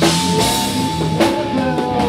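Rock music played by a band: drum-kit hits over sustained notes, one of which slides down in pitch in the second half.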